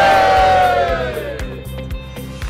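A group of people shouting together in one long cheer that falls in pitch and fades over about a second and a half, over background music with a steady beat.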